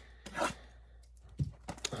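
A cardboard trading-card blaster box being torn open by hand: one short rip about half a second in, then a few small clicks and crinkles of the cardboard near the end.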